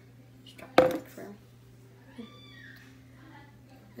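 A single sharp knock about a second in, followed by faint, soft sounds and a low steady hum.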